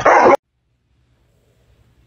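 A dog's single short, loud bark as it snaps with its teeth bared, over in about a third of a second.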